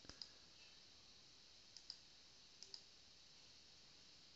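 Faint computer mouse clicks: a few near the start, then two pairs of quick clicks, just before two seconds and near three seconds in, over faint hiss.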